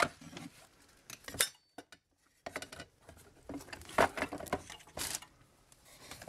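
Scattered clicks, knocks and light clatter of wooden nunchaku sticks and their clamping jig being handled as the epoxied sticks are taken out of the clamp, with a short quiet gap about two seconds in.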